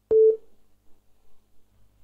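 A click and then one short telephone beep: a single steady mid-pitched tone lasting about a third of a second at the very start, followed by a near-silent phone line.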